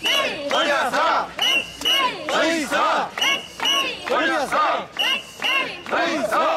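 A crowd of mikoshi bearers chanting in unison as they carry the portable shrine, loud shouted beats about twice a second. A short high-pitched tone recurs in time with the chant.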